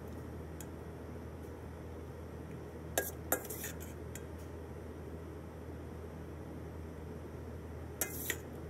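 Metal serving spoon scraping and clinking against a stainless steel mixing bowl while scooping sauced pasta, with two sharp clinks about three seconds in and a few fainter ones. A steady low hum runs underneath.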